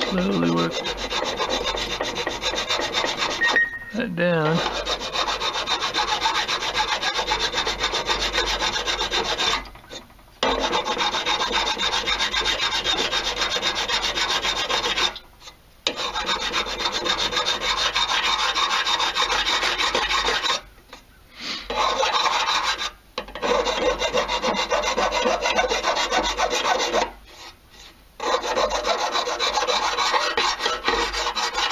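Flat hand file rasping back and forth across the aluminium crankcase half of a two-stroke dirt bike, knocking down a high spot left by a weld repair. Steady filing strokes, broken by about six short pauses.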